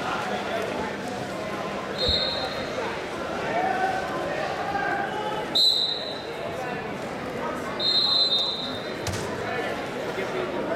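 Wrestling shoes squeaking on the mat as the wrestlers move their feet: three short, high-pitched squeaks, about two, five and a half and eight seconds in, with a low thud near the first. Indistinct voices run underneath throughout.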